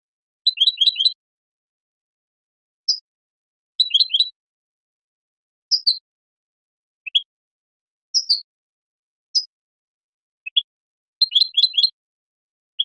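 European goldfinch (Carduelis carduelis) song in short bursts of high twittering chirps. Quick clusters of several notes alternate with single chirps, with brief pauses between them.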